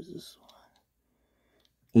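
A man's voice trails off at the start, then near silence, then he starts speaking again right at the end.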